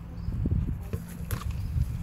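Low rumbling noise of wind on the microphone outdoors, with a few soft thumps and one sharp click a little after a second in.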